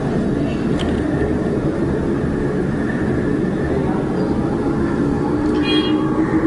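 Steady low background rumble with a faint hum, machine-like noise that holds an even level.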